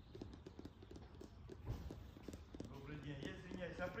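A run of light, irregular clicks or taps, with a person starting to speak in Russian in the second half.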